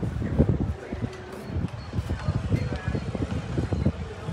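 Wind buffeting the camera's microphone: a rough, gusting low rumble that rises and falls unevenly.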